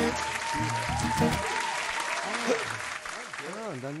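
Applause with men's laughter and talk over it, thinning out near the end.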